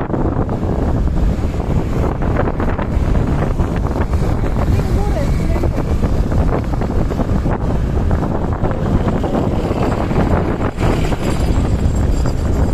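Wind buffeting the microphone while travelling along a road in the open air, a steady low rumble with road and traffic noise beneath it.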